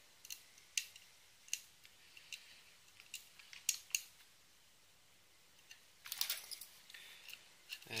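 Small, sharp metallic clicks and ticks of a small screwdriver working tiny screws into a graphics card's metal mounting bracket, irregular and spaced about half a second to a second apart. A short stretch of softer rustling handling noise comes about six seconds in.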